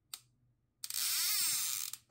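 Neon-sign switch-on sound effect for an animated logo: a sharp click over a faint low electrical hum, then a loud hissing buzz about a second long with a sweeping whoosh through it, cutting off just before the end.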